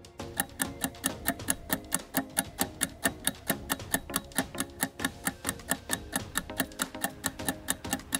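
Quiz countdown timer ticking evenly, about four ticks a second, over background music.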